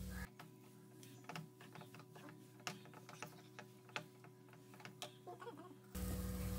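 Faint, irregular clicks and scrapes of a wooden spatula against a nonstick pan while stirring grated coconut into a thick mashed banana and semolina mixture.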